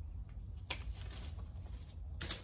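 Lemon tree foliage rustling as branches are handled and trimmed, with one short, sharp rustle about two-thirds of a second in, over a low, steady background rumble.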